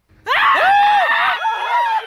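A group of people screaming in fright, suddenly and loudly, starting about a quarter of a second in. Several high voices overlap for about a second, then one high scream holds on to the end.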